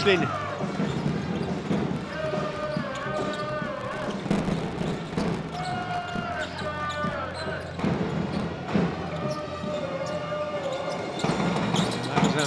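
A basketball being dribbled on a hardwood court in a large arena, with the crowd chanting in repeated phrases every few seconds.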